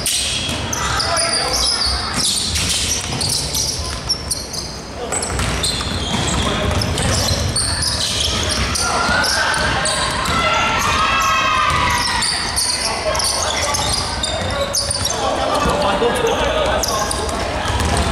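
Basketball game on a hardwood court in a large gym: the ball being dribbled and bounced, with sneakers squeaking as players run and cut.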